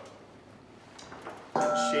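Quiet room tone, then near the end a sudden chime-like tone of several held pitches sounds while a man starts speaking.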